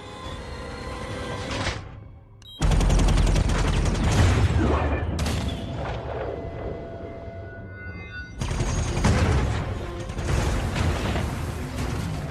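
An action-film soundtrack: rapid turret machine-gun fire with heavy booms and crashes, mixed over score music. It comes in suddenly and loud about two and a half seconds in, eases off mid-way, and surges again just after eight seconds.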